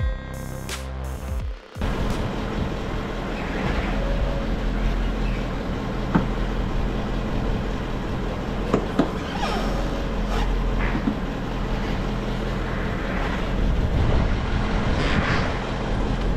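Electronic music cuts off about two seconds in. After that a steady low workshop hum runs on, with a few sharp clicks and knocks from work at the wheel.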